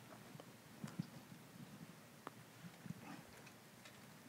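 Near silence: room tone with a few faint, scattered laptop-keyboard taps.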